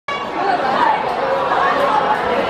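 A crowd of young voices chattering and calling out over one another, steady and loud, with no single voice standing out.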